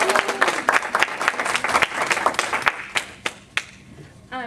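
Audience applauding, the claps thinning out and dying away about three seconds in.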